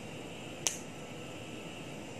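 Steady low hiss of background noise with a single short, sharp click about two-thirds of a second in.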